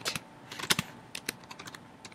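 Typing on a computer keyboard: separate key clicks at an uneven pace.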